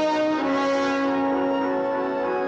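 Orchestral film-score music. A chord changes about half a second in and is then held steadily.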